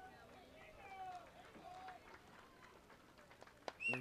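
Faint distant voices of people talking, with quiet open-air background noise.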